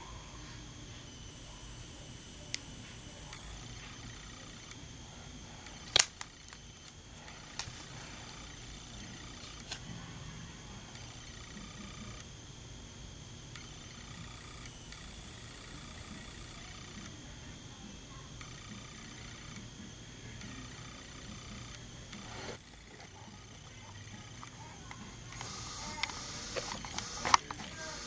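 Low steady hum and faint high whine from the camera, with a few sharp clicks and knocks of handling, the loudest about six seconds in. Near the end comes a cluster of clicks and rustling.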